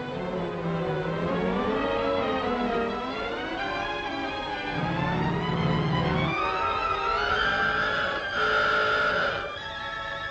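Orchestral film score led by strings, its melody climbing steadily in pitch to a high held note near the end.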